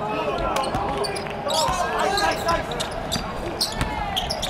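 A basketball being dribbled on a hardwood court, a series of short sharp bounces, with voices in the background.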